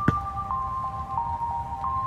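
Background music: a simple electronic melody of two held, bell-like tones stepping between notes. A single sharp thump comes just after the start.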